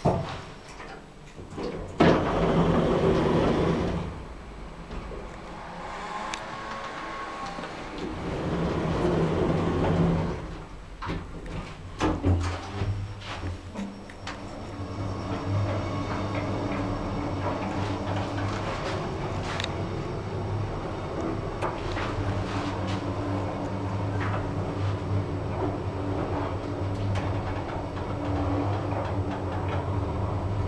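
Kone MonoSpace lift: the car doors slide shut in the first few seconds, then a few clicks as the car starts off, and from about fourteen seconds the car runs steadily down the shaft with a low, even hum from its gearless EcoDisc traction machine and ride noise.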